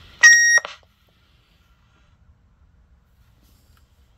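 A short, loud, high-pitched squeal lasting about half a second, just after the start, heard through a CB radio's external speaker. It is typical of acoustic feedback from a handheld radio keyed up close to that speaker.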